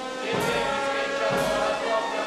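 A choir singing with an orchestra and brass, sustained chords over a low beat about once a second.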